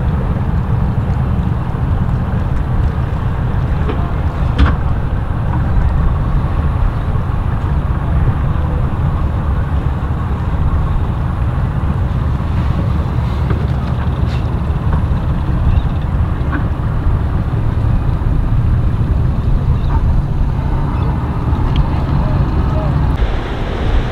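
Steady low rumble of a boat's engines running at speed, with wind on the microphone.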